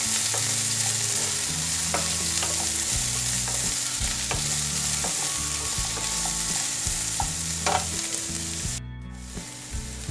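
Sliced onions and ginger sizzling steadily in hot oil in a non-stick kadai, with the scattered clicks and scrapes of a wooden spatula stirring them. The sound cuts out briefly near the end.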